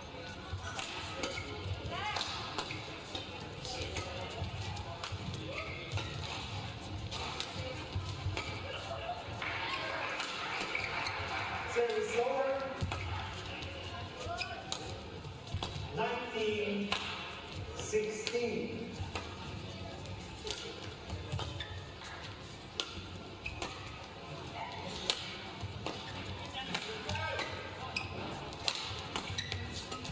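Badminton rally: the shuttlecock is struck back and forth by rackets, giving sharp hits every second or so, in a large echoing hall.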